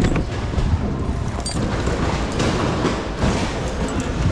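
Rustling and knocking of bags and other items being handled and rummaged through in a bin, over a continuous low rumble.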